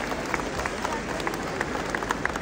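Audience applauding in a large hall, a scattering of separate claps.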